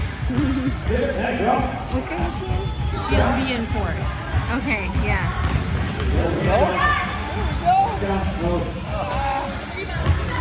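Basketball dribbled on a hardwood gym floor during a game, with players' and spectators' voices.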